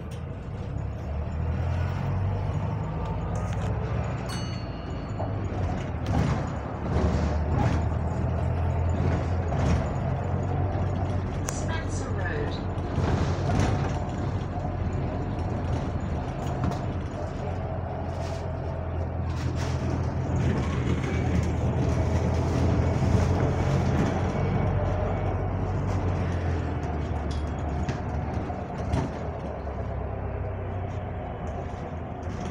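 Double-decker bus heard from inside on the upper deck while it drives. The engine drone grows louder about a second in and then stays steady, with frequent knocks and rattles from the bodywork and fittings.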